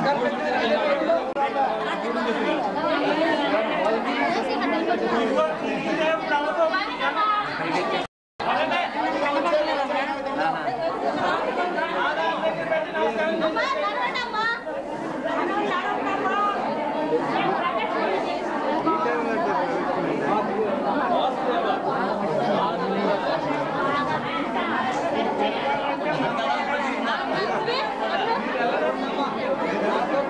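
Crowd chatter: many people talking at once, their voices overlapping with no single speaker standing out. The sound cuts out completely for a split second about eight seconds in.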